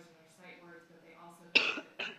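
A person coughing loudly close to the microphone: one sharp cough about one and a half seconds in and a second, weaker one at the end, over faint speech.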